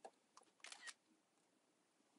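iPad screenshot sound: a faint click as the screenshot is triggered, then the camera-shutter sound about half a second in.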